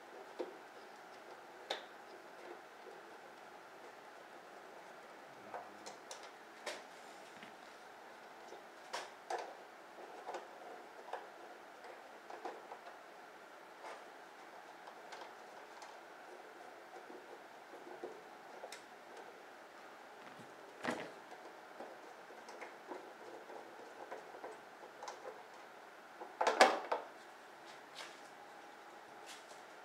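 Scattered light clicks and small knocks of hands and a tool working the fasteners of a Harley-Davidson V-Rod's front side cover, over a faint steady hiss. Near the end comes a louder, brief clatter as the cover is pulled free.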